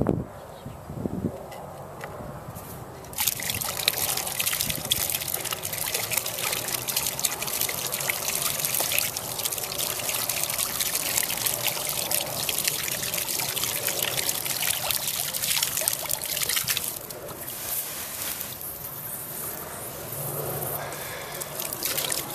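Water running out of an open metal riser pipe and splashing into the flooded hole. The supply is turned on a little so the flow keeps dirt out of the threads while the pipe is screwed back into its tee. The flow starts about three seconds in and grows quieter after about seventeen seconds.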